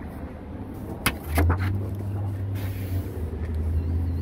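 A couple of sharp clicks about a second in, then a low steady engine hum.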